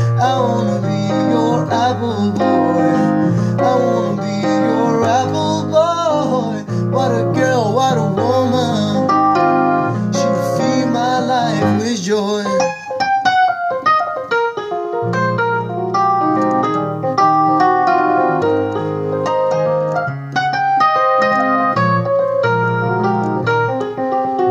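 Electric keyboard played in a piano voice, sustaining chords under a wavering melody sung with vibrato for about the first half. From about halfway the keyboard carries on alone in a busy run of struck notes.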